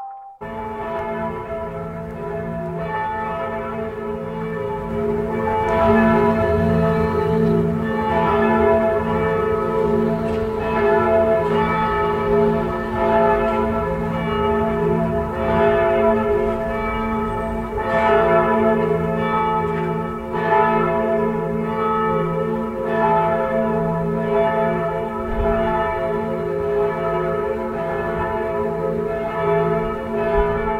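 Bells pealing: many overlapping strikes ringing on into one another, a new strike every second or two.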